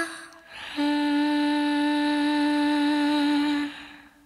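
The end of a song: a voice holds one long final note, slightly wavering, for about three seconds, then it fades away near the end.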